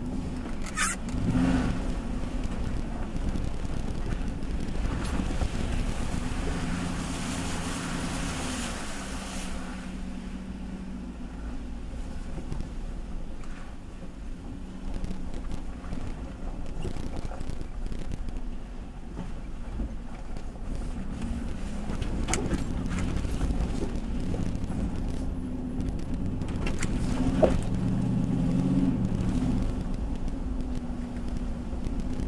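Nissan Titan pickup's engine running at low speed, heard from inside the cab, its pitch rising and falling as it drives through a shallow flowing wash and over a rough dirt track. Scattered knocks come from the tyres and suspension, with a stretch of louder hiss from splashing water between about six and ten seconds in.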